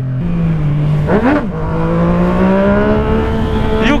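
Remapped Yamaha MT-09's three-cylinder engine pulling under acceleration. Its pitch steps up about a quarter second in and briefly rises and falls about a second in, then climbs steadily.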